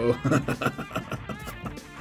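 A man laughing in a run of short breathy bursts, over background guitar music.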